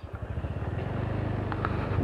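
Motorcycle engine pulling away with a fast, even firing beat, growing steadily louder as it accelerates.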